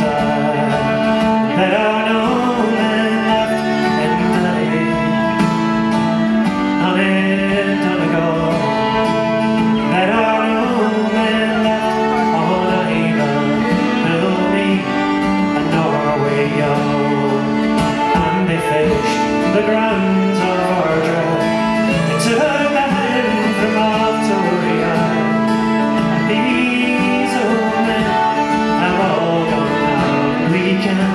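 Live Irish folk trio playing an instrumental passage: uilleann pipes, fiddle and strummed acoustic guitar, with a sustained low note held under the melody.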